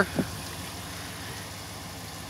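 Steady background noise with no distinct events, a pause between spoken lines.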